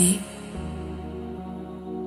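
Soft, slow background music of long held notes, new-age in character; a voice finishes a word right at the start.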